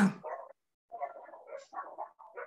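The end of a man's spoken word, then several short, faint, high-pitched cries from a dog, about a second in.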